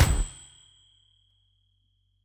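Final note of a podcast's outro jingle: a bright ding that rings out and fades away within about a second, with a faint high tone lingering after it.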